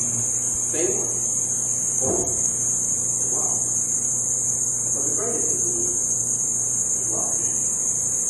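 Faint, indistinct speech in short phrases with gaps between them, over a steady high hiss and a low electrical hum.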